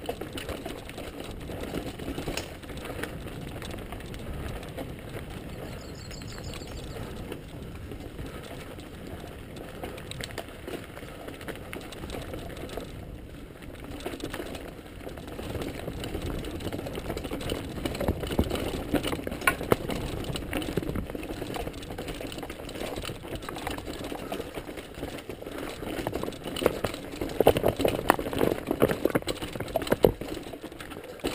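Mountain bike rolling over rocky singletrack: a steady rattle of tyres on stones and the bike jolting, with irregular sharp knocks that come louder and thicker near the end.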